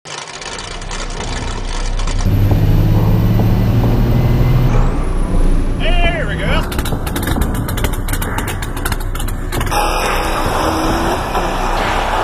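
A run of short vehicle clips cut together, fading in from silence: engines running inside and outside a pickup, with a man's excited shout about six seconds in. The character of the sound changes abruptly several times as the clips change.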